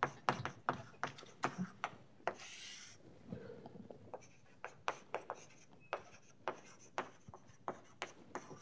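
Chalk writing on a blackboard: a quick run of taps and short scratches as the letters are formed, with one longer scrape a little over two seconds in as a word is underlined.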